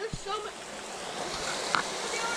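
Small rocky creek running, a steady rushing hiss of water over stones.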